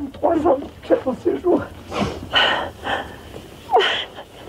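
A person's voice, breathy and uneven, giving no clear words, with several loud gasping breaths.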